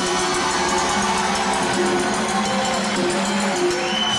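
Live salsa band playing, with a trombone section over Latin percussion.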